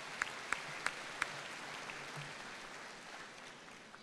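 Audience applauding, with sharp single claps from one person close by, about three a second, that stop a little over a second in; the rest of the applause then dies away.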